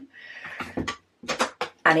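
A few light clicks and knocks of plastic diamond-painting trays being handled and set down.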